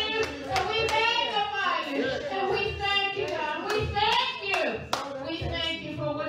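A woman's voice singing into a microphone in long, gliding, held phrases, with hands clapping along in sharp, uneven claps.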